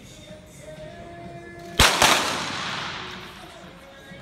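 Two .22 sport pistol shots about a quarter second apart, followed by a long echo that dies away through the large indoor range hall.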